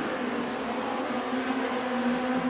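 Mini stock dirt-track race cars' engines running at racing speed down the straightaway, a steady engine drone.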